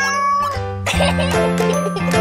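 Cheerful children's intro jingle. A held cartoonish vocal note at the start gives way, about a second in, to bright tinkling music over a steady bass note.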